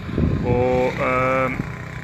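A man's voice holding drawn-out vowels, over the low rumble of a motorcycle engine passing on the road.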